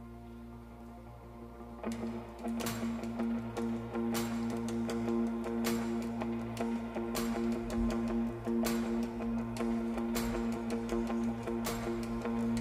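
A live worship band plays a song's instrumental intro. A chord is held at first; about two seconds in the guitars come in, strumming about every second and a half over the sustained chord.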